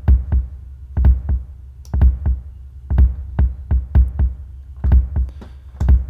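Logic Pro X's Ultrabeat drum synth playing a looped electronic drum pattern: a deep kick about once a second with lighter, clicky percussion hits in between.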